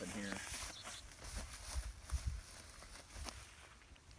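Rustling and brushing of tall grass and pond weeds as a man steps down the bank and drags a snapping turtle in on its line, over a low uneven wind rumble on the microphone, with a few soft knocks.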